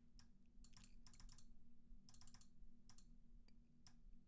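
Faint computer keyboard keystrokes in short scattered bursts, over a low steady hum.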